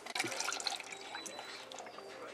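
Pancake ingredients being measured and poured into a mixing bowl: a quick run of small clicks and taps in the first second, then a faint, steady pouring sound.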